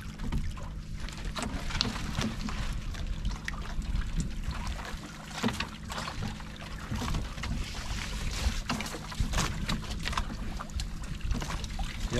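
A steady low engine hum aboard an outrigger fishing boat, with water splashing against the hull and scattered knocks and rustles as fishing line and gear are handled on deck.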